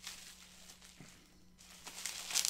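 Near silence with faint rustling and a few small clicks from handling a tape-wrapped package, over a low steady hum.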